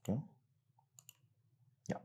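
Computer mouse clicking twice in quick succession, about halfway through, against a quiet room hum.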